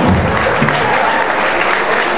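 Audience applauding as a live band's song ends, with a last low note from the band dying away in the first moments.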